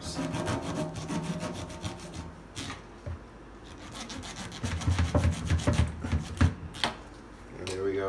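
Knife sawing back and forth through a flounder's skin as the fish is scored, a rapid rasping run of short strokes. About five seconds in come heavier low knocks among further strokes.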